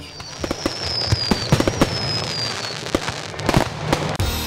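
Fireworks going off: a rapid, irregular series of bangs and crackles, with a high thin whistle that slowly falls in pitch through the first two and a half seconds.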